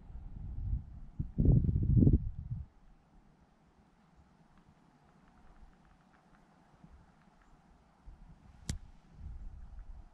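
Near-quiet open countryside: a faint steady background with a few faint ticks. Low rumbles on the microphone fill the first two and a half seconds and return briefly near the end, and there is a single sharp click about three-quarters of the way through.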